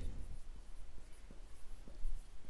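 Faint scratching of a pen writing during a lecture, with a few short strokes.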